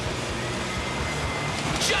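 Combat robots driving about the arena: a steady mechanical hum and noise from their drive motors, with a faint high whine from about half a second in, under background music.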